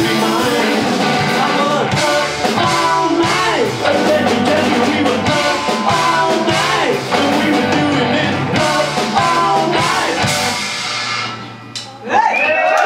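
Live rock band playing loud psychedelic rock on electric guitars, bass guitar and drum kit. Near the end the song finishes and the last chord dies away.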